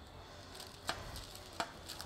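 Two light clicks of a metal spoon against a parchment-lined metal baking tray as it is slid under a zucchini flan, over a faint steady kitchen hiss.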